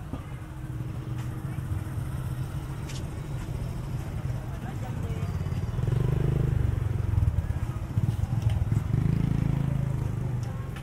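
Busy street ambience with voices, and a small motorcycle engine running close by, louder from about halfway through.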